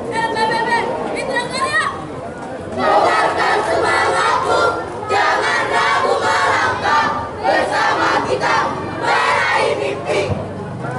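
One high voice shouts a drawn-out call. From about three seconds in, the whole marching troop chants a group yell together in several loud bursts.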